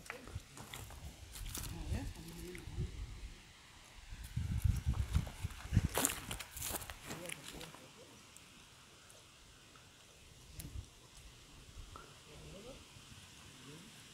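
Footsteps on dry dirt and grass, with rumbling and handling noise on the phone's microphone. A few sharp clicks come about six to seven seconds in, and the second half is quieter.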